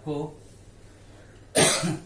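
A man coughs once, loudly, near the end, after a short spoken word at the start.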